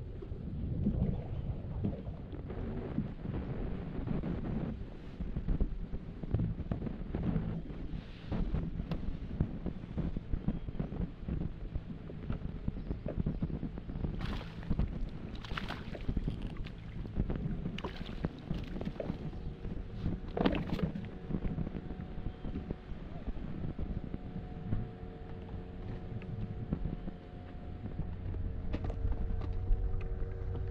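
Wind buffeting the microphone over water lapping against a plastic pedal kayak's hull. A few sharp clicks and splashes come in the middle while a fish is played on rod and reel, and a faint steady hum joins for the last third.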